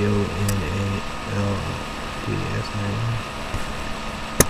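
A man's voice spelling out letters one at a time, each letter a short, separate syllable, over a steady low hum.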